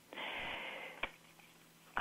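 A person's breath close to the microphone, a soft rush of air lasting under a second, followed by a single short click.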